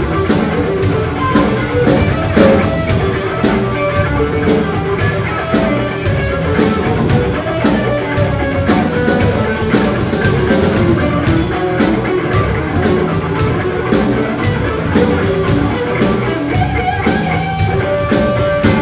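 Live blues-rock band playing an instrumental jam: electric guitar over bass guitar and a drum kit keeping a steady beat.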